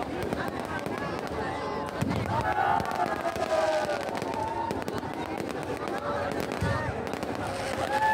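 Aerial fireworks going off overhead with many sharp crackles and pops, over the voices of a large crowd.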